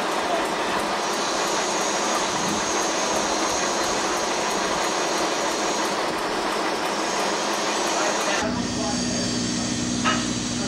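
Heavy machinery engine running loudly with a thin, steady high whine over it. About 8.5 s in the sound switches abruptly to a lower, steadier engine hum.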